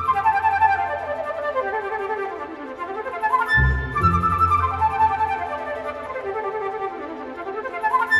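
Orchestral music: a flute plays two falling melodic phrases, one in each half, over a low string accompaniment that comes in again about three and a half seconds in.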